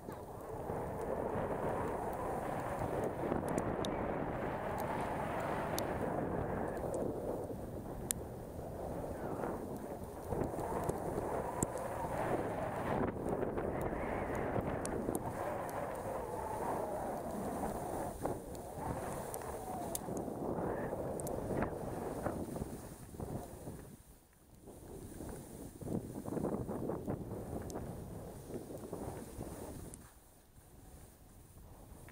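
Wind rushing over the camera's microphone while skiing downhill, mixed with skis running over snow. The rush swells and eases with speed, drops away sharply about three-quarters of the way through, then picks up again.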